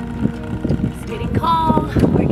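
Wind rumbling on the microphone, with a few light knocks and a woman's voice briefly near the end.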